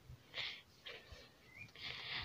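A few faint, short breaths close to the phone's microphone, separated by near-quiet stretches.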